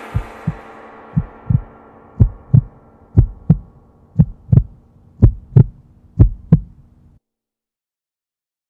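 Heartbeat sound effect: paired low thumps, lub-dub, about once a second, seven beats in all, stopping abruptly about seven seconds in. The tail of an earlier ringing sound fades out under the first few beats.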